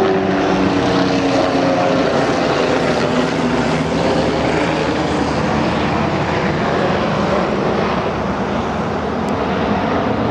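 A loud, steady engine drone whose pitch falls slowly over the first few seconds, then gives way to an even rushing noise.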